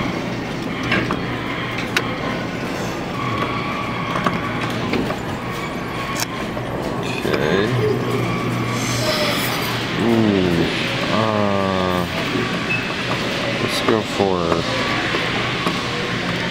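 Busy arcade background: indistinct voices over a steady machine hum, with several pitched sounds that fall in pitch and scattered sharp clicks.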